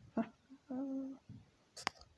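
A man humming one short, steady note with his mouth closed, after a brief breathy vocal sound at the start; a single sharp click comes near the end.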